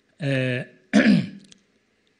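A man clearing his throat into a handheld microphone: two short voiced sounds, the second falling in pitch.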